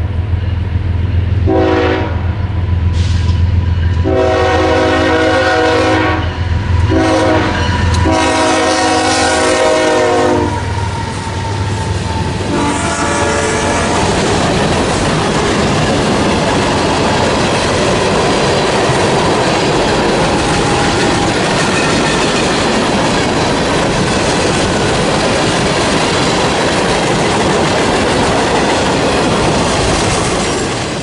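The air horn of an approaching freight train's lead GE ES44AC locomotive sounds several blasts, a mix of long and short, over the low rumble of its diesel engine through the first half. From about 14 s the steady rumble and clatter of freight cars rolling past on the rails takes over.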